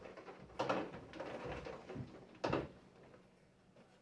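Folded paper lottery tickets sliding and tumbling inside a hand-turned clear draw drum, with two louder rushes, one near the start and one just past halfway, and softer rustling between them.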